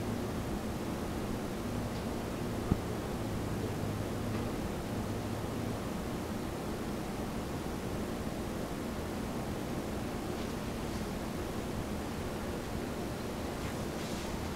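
Steady background hiss of room tone with a faint low hum that fades out about six seconds in. One small click comes a little under three seconds in.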